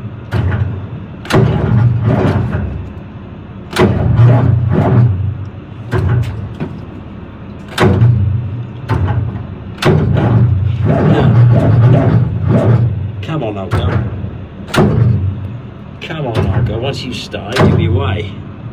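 The starter of an armoured vehicle's engine cranking in repeated short bursts, about one every two seconds, with one longer crank about ten seconds in. The engine does not catch, typical of batteries too weak to turn it over properly.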